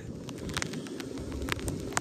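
Wind rushing over a handheld phone's microphone, with scattered sharp clicks and crackles through it.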